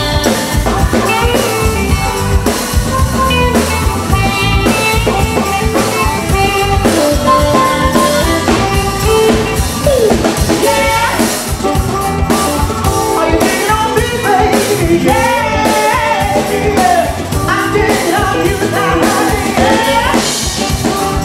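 Live band playing a jazzy song: lead vocals over a drum kit and electric guitars, at a steady beat.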